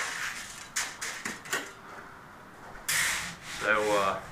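Shovel scraping and scooping rice coal into buckets: several short rasping scrapes, with a longer, louder scrape about three seconds in.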